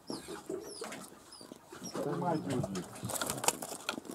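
Indistinct voices talking low, loudest in the second half, with a few short, faint high chirps in the first two seconds.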